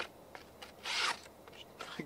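A sharp OKNIFE Otacle A1 hatchet edge slicing through a sheet of paper once, about a second in, with a short papery rasp. The clean cut shows the edge is really sharp out of the box.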